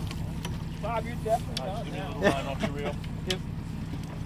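Boat engine running with a steady low hum, under scattered voices on deck and a few sharp clicks.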